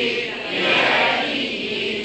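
A group of many voices chanting together in unison, a dense, continuous blend with no single voice standing out, swelling again about half a second in.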